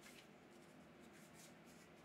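Faint soft rustling and light clicks of a stack of Magic: The Gathering trading cards being handled and slid in the hands, barely above near silence.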